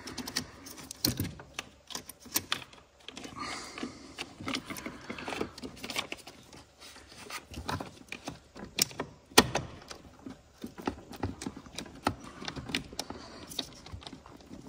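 Positive battery terminal clamp and its plastic cover being pushed and worked onto the battery post by hand: irregular small clicks and taps, with two sharper knocks about nine seconds in.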